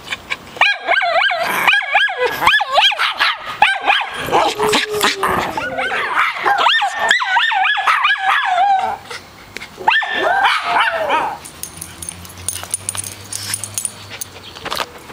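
Small poodle-mix dog barking, a fast run of high, yappy barks for most of the first nine seconds. After a short pause there is another burst of barks around ten seconds in, and then it goes quieter.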